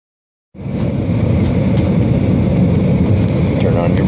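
Steady low rumble of a Jeep being driven on the road, heard from inside the cabin: engine and road noise, starting about half a second in.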